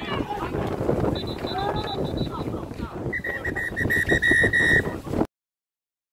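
Referee whistles blown on the pitch: a thin, high blast about a second in, then a longer, lower blast from about three seconds, over players shouting. The sound cuts off suddenly a little after five seconds.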